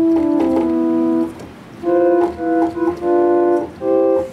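Kawai K1 digital synthesizer playing its Airy Flute patch from the keyboard: steady held notes, some overlapping, a short pause just over a second in, then a run of shorter notes.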